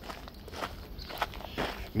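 Footsteps walking on a gravel and dirt path, several soft steps.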